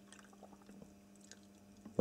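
Water poured from a plastic bottle into a plastic cup, a faint trickle.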